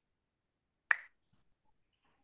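A single short, sharp click a little under a second in, against near silence.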